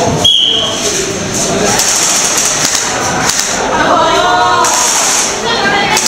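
Voices of a group of people talking in a large, echoing hall, with a brief high-pitched tone about a third of a second in.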